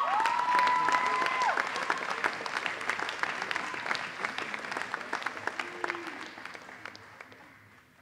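An audience applauds a graduate, with high, drawn-out cheers over the first second or so. The clapping then thins out and fades away toward the end.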